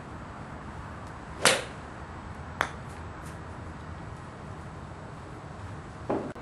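A golf club striking a ball off a driving-range hitting mat: one sharp crack about a second and a half in, then a shorter, fainter click about a second later, over steady background noise.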